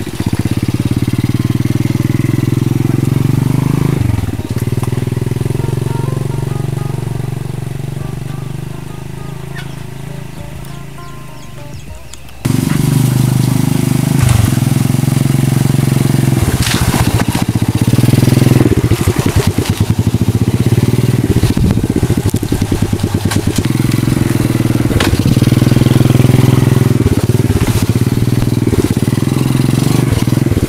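Small motorcycle engine of a motorbike-and-sidecar becak running along a bumpy dirt track, fading as it moves off. About twelve seconds in the sound cuts abruptly to a louder, closer engine with frequent knocks and rattles from the ride.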